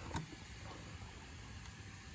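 Faint handling noise as the hard plastic body shell of an RC car is lifted off the chassis, with one light click shortly after the start.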